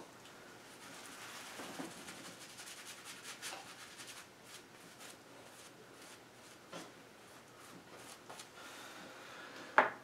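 Faint, intermittent rubbing and scraping strokes against a lathered face during a wet shave.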